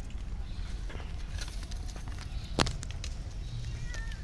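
A steady low rumble with faint scattered clicks, and one sharp click about two and a half seconds in, the loudest thing heard.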